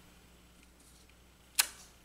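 Near silence as a clear acrylic stamp block is pressed onto card stock, then a single sharp click near the end as the block is lifted off and knocks against a hard surface.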